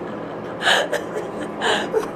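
Two breathy gasps of laughter, about a second apart, from people laughing hard.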